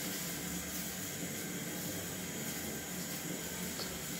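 Pot of water boiling on the fire, a steady hiss, with one faint tick near the end.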